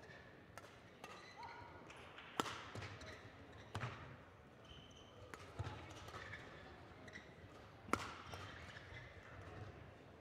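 Badminton rackets striking a shuttlecock during a rally: sharp hits one to two seconds apart, the loudest about two seconds in and near the end, with short squeaks of court shoes on the floor between them.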